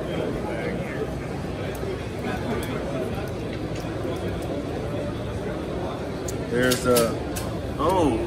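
Crowd babble of a busy exhibition hall: many people talking at once as a steady background, with one nearer voice speaking briefly about seven seconds in.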